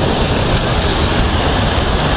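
A loud, steady rumbling noise with a hiss over it, with no clear pitch or rhythm.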